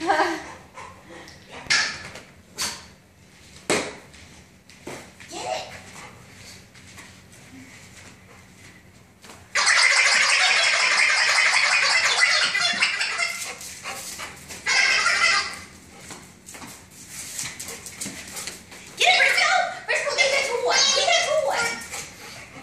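Wobble Wag Giggle Ball dog toy giggling in loud bursts as it is carried and tossed about, with a few sharp knocks early on.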